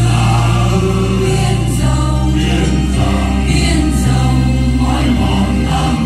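A church choir singing a Vietnamese Catholic hymn over a keyboard-style accompaniment, with held bass notes that change in steps.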